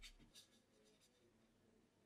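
Near silence: room tone, with a faint tick or two in the first half second from the paintbrush against the metal watercolour tin.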